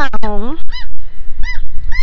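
Two short, arching calls of a gull, the second about half a second after the first.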